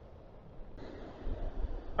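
Wind rumbling on the microphone over the wash of surf breaking on a shingle beach, with a hissier rush of noise coming in abruptly under a second in.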